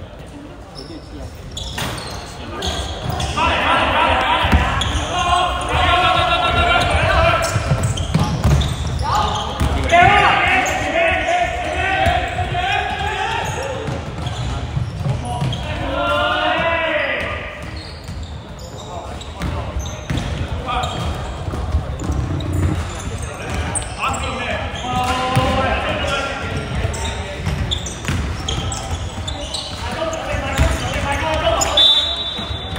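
Voices calling out across a large, echoing sports hall during a basketball game, with a basketball bouncing on the court as a string of short thuds.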